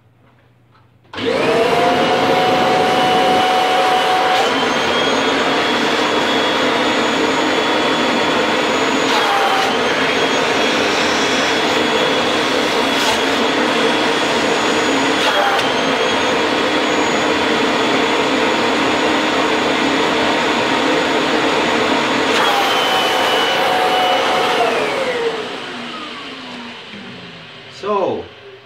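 Kirby vacuum cleaner motor with its direct-drive fan switched on, running loud and steady with a whine while its hose is capped by a suction gauge. The pitch steps up a few seconds in and dips briefly twice. Near the end it is switched off and winds down, the whine falling in pitch.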